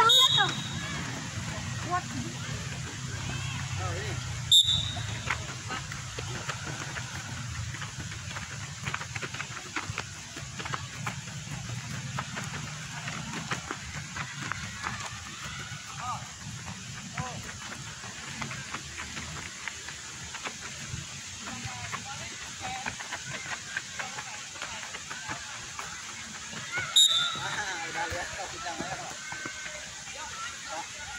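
Faint, indistinct voices of people talking over steady outdoor background noise, with three sharp clicks: one at the start, one about four seconds in and one near the end.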